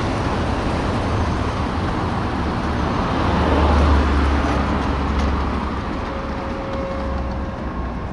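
Street traffic noise: a steady rumble of engines and tyres, with a deep vehicle rumble swelling louder about four seconds in and then fading.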